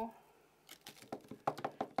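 Light taps and clicks of a small stamp pad being dabbed onto a clear stamp on a stamping platform to re-ink it. The taps start about two-thirds of a second in and come several times, the loudest near the end.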